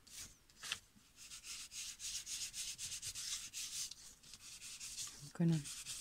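A small, nearly dry Distress ink pad rubbed directly along the edge of paper in quick repeated strokes, about three a second, giving a dry scratchy rubbing.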